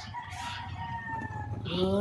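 A rooster crowing: one long, faint, drawn-out call that sinks slightly in pitch toward its end. Near the end a louder sing-song human voice starts up.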